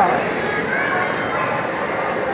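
Massage chair running a shaking massage cycle: a steady, dense mechanical noise with rhythmic jostling of the phone against the body and chair, and a short vocal 'oh' from the person being massaged near the start.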